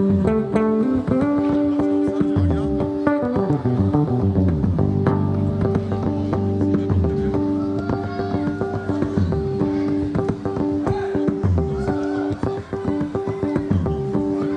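Solo electric bass guitar played live in an instrumental passage. Plucked low notes and several sliding notes in the bass sound against steadily held higher notes.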